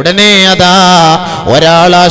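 A preacher's male voice chanting in long, held notes with a slight waver, rather than speaking. A first note is held for about a second, then after a brief dip a second held note begins.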